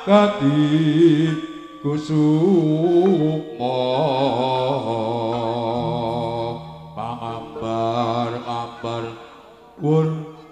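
Live jaranan accompaniment: a chanted vocal melody in long, wavering phrases over sustained low tones, with brief pauses between phrases and no drumming.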